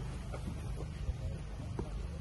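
Cardboard boxes being shifted and stacked, a few soft knocks over a steady low wind rumble.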